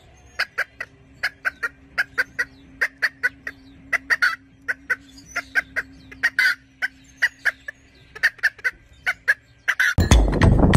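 Rooster clucking: a long run of short, sharp clucks, about three or four a second, coming in loose groups.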